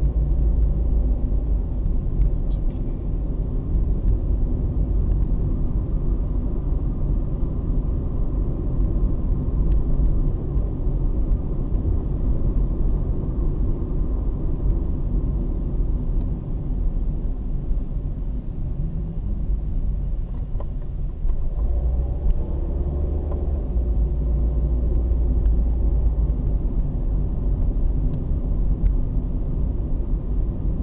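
Car driving along a paved road, heard from inside the cabin: steady low engine and tyre rumble, a little heavier from about two-thirds of the way in.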